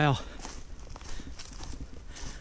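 Footsteps of a hiker walking over dry leaf litter on a forest trail: an uneven run of soft crunches and rustles.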